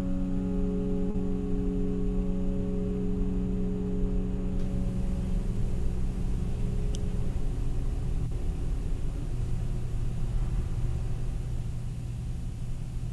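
A chord on a grand piano holds and slowly dies away over the first several seconds. Under it runs a steady low rumble that carries on after the chord has faded.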